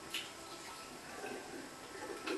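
Faint dripping and trickling of water into a sink, with a light knock just after the start.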